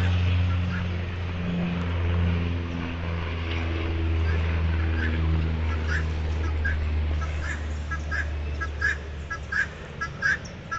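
Helmeted guineafowl calling in short, harsh, repeated notes, about two a second, starting about halfway in. Under them a low steady engine drone fades out near the end.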